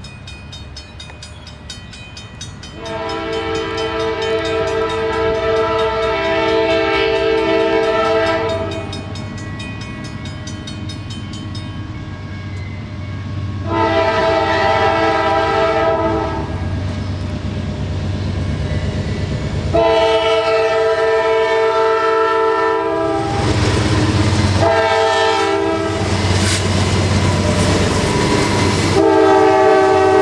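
Norfolk Southern GE Dash 9-40CW diesel locomotive blowing its multi-note horn in a series of blasts, the first about six seconds long, then three shorter ones, as the train approaches. Under the horn runs the low diesel rumble, and near the end the locomotives and double-stack cars pass close by with loud engine and wheel noise.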